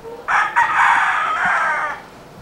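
A rooster crowing once: one long call lasting about a second and a half.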